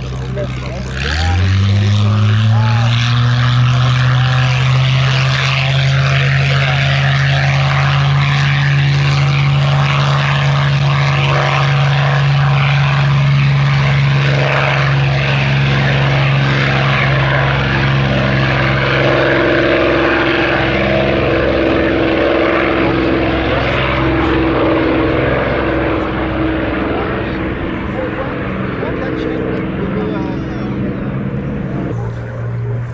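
Supermarine Spitfire T IX's Rolls-Royce Merlin V12 engine opening up to take-off power about a second in, its pitch rising sharply, then holding a loud, steady note through the take-off run and climb-out. The note eases a little near the end as the aircraft climbs away.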